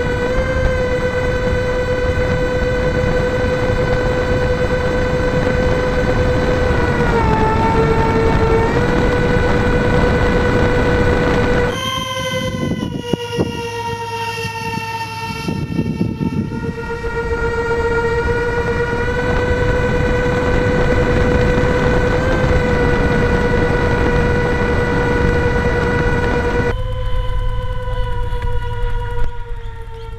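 The four 55 mm electric ducted fans of an RC C-17 Globemaster model give a steady, high-pitched whine. Its pitch dips for a second or two about a third of the way in as the throttle is eased, then settles again.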